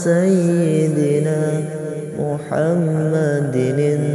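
Sholawat, an Arabic devotional chant in praise of the Prophet, sung in the Javanese pujian style with long held notes and wavering melismatic ornaments. A short break about two seconds in leads into the next phrase.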